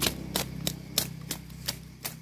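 Fresh bamboo shoot sheaths being peeled off by hand, giving a string of crisp snaps and cracks, about eight in two seconds at uneven spacing.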